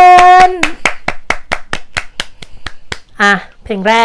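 Two people clapping their hands in a steady run of about five claps a second, stopping about three seconds in.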